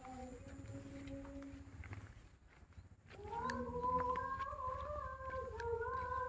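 A voice reciting the Quran (mengaji) in long, slowly winding chanted notes. One held phrase fades out about two seconds in, and after a short pause a new, louder phrase begins about three seconds in, over a low steady rumble.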